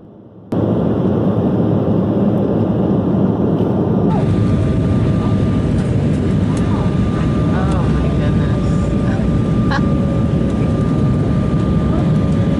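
Jet airliner cabin noise in flight: a loud, steady rushing drone with a faint steady whine above it. It starts about half a second in and shifts slightly at a cut about four seconds in.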